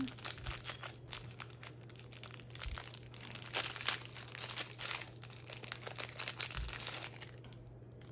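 Clear plastic packaging crinkling and crackling as hands handle a bag of lace trim, a busy run of irregular rustles that stops about seven seconds in.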